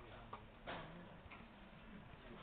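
Three faint computer mouse clicks within the first second and a half, over quiet room noise. Each click sets an anchor point of a polygonal lasso selection.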